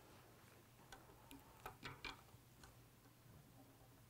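Near silence with a handful of faint, short ticks from tying thread being wrapped off a bobbin to bind a marabou tail onto a hook held in a fly-tying vise.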